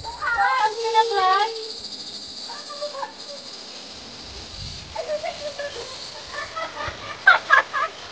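People's voices talking and calling out in short snatches, loudest near the end, over a steady high-pitched drone.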